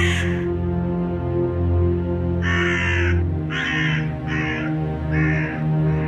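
Crow cawing about five times in quick succession from about two and a half seconds in, over a dark, sustained music drone, with a sharp burst at the very start.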